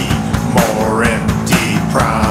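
Rock music, an instrumental break with no vocals: an electric guitar plays a lead line with bending notes over a steady drum beat.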